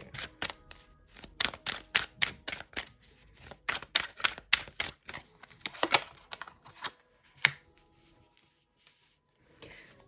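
A deck of tarot cards being shuffled by hand: a quick run of light card flicks and slaps, about three or four a second, that thins out after about five seconds, with a last sharper slap about seven and a half seconds in.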